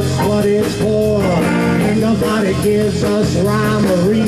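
Live blues-rock band playing: electric guitar, electric bass, keyboard and drums at full volume, with a man singing.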